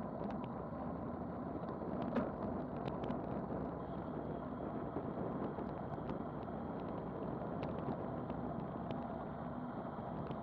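Steady wind rush over an action camera's microphone, with road-bike tyre noise on asphalt, on a fast descent at about 35 to 39 mph. A few light ticks and knocks stand out, the clearest about two seconds in.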